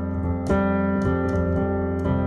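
Piano playing a two-note left-hand voicing, F with the G a ninth above (a root-and-ninth shape), the notes held and ringing. Further notes sound about half a second and a second in.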